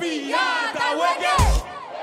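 Several voices shouting and whooping over club dance music, with one deep bass hit about one and a half seconds in.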